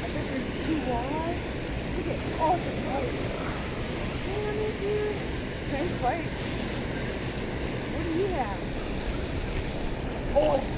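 Steady rush of water pouring through a dam spillway, with faint snatches of voices now and then.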